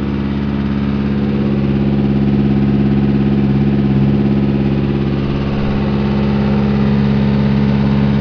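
Horizontal directional drill rig's engine running steadily, with a slight rise in level around the middle.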